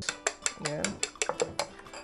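A metal utensil beating eggs in a small glass bowl, clinking quickly against the glass at about five strikes a second.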